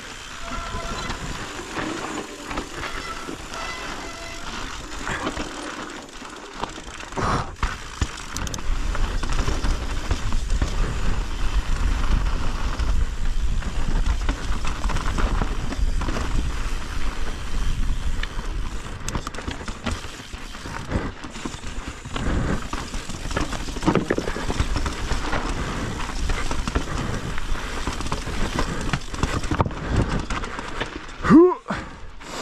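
Mountain bike descending rocky dirt singletrack: tyres rolling over gravel and rock, with the bike rattling. Wind buffeting on the camera microphone grows much louder from about seven seconds in.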